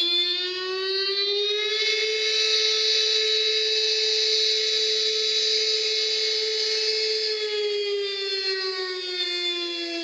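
Outdoor warning siren winding up in pitch over about two seconds, holding a steady wail, then winding down in pitch near the end.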